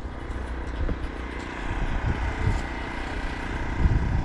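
A motor vehicle's engine running steadily close by, a low rumble with a constant hum.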